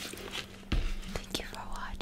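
Soft whispering, with a dull thump about three-quarters of a second in as a cardboard fried-chicken bucket is set down on the table, and a few light handling clicks.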